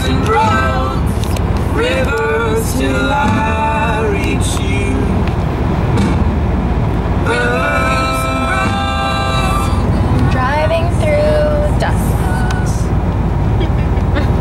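Steady low road and engine rumble inside a moving car's cabin, with a voice singing over it in held and gliding notes.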